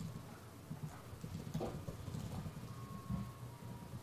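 Computer keyboard typing: faint, irregular light key clicks over a steady low background hum.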